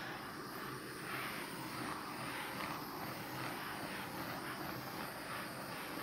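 Handheld gas torch burning with a steady rushing hiss as its flame is swept over wet epoxy resin to pop surface bubbles.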